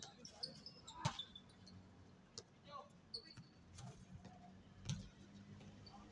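A basketball bouncing on a hard outdoor court: a few separate hard bounces, the loudest about a second in and another near five seconds, with faint voices behind.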